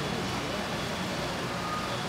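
Steady background din of a busy market with faint, indistinct voices, and a short, faint beep near the end.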